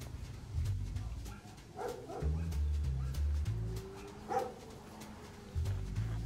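A dog barking a few times: a pair of barks about two seconds in and another a little past four seconds, over a low, uneven rumble.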